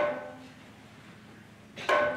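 Struck metal percussion ringing with a few clear bell-like tones: one strike right at the start that fades within about half a second, and a second strike near the end.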